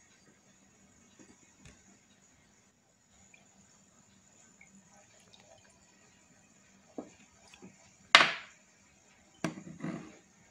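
Water poured from a glass bottle into a paper-lined plastic funnel, mostly faint, with a short, loud splash about eight seconds in. Glass knocks near the end.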